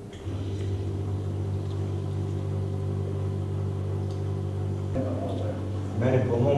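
A steady low hum starts about a quarter of a second in and holds level, with busier sound joining it near the end.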